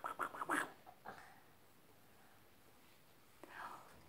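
A woman's soft whispered voice in a quick run of short, hissy bursts during the first second, then a quiet pause of about two seconds before she starts whispering again near the end.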